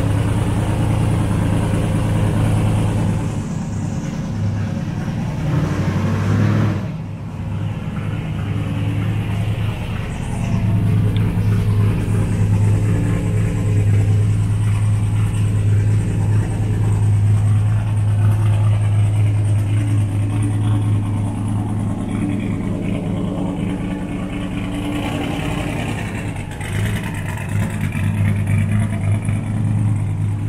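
Twin-turbo LSX V8 of a Buick Skylark running at a steady idle as the car is pulled onto an alignment rack, with a brief drop in level about seven seconds in.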